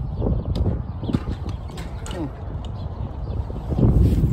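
Wind buffeting a handheld phone's microphone as a low rumble, with scattered handling knocks and clicks.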